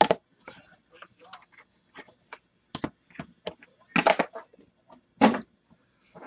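Trading cards, card boxes and plastic card holders being handled: scattered light clicks, taps and rustles, with a few louder knocks near the start and around four and five seconds in.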